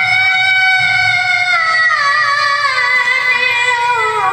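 A young boy's high voice chanting Qur'an recitation into a microphone, holding one long melismatic note that wavers and slowly falls in pitch. A new phrase begins near the end.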